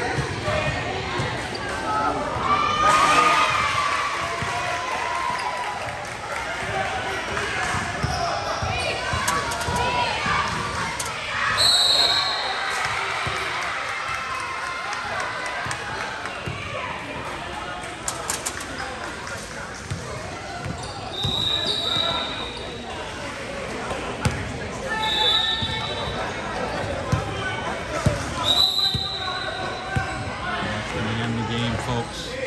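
Basketball game play in a gym: a ball bouncing on the hardwood floor again and again, with voices of players and spectators echoing in the hall. A few short high-pitched tones sound at intervals.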